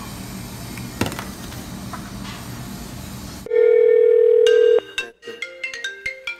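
Telephone sounds: after a few seconds of faint background hiss with a single click, a loud steady electronic phone tone holds for just over a second. It is followed by a quick melody of short electronic notes at changing pitches, like a phone ringtone.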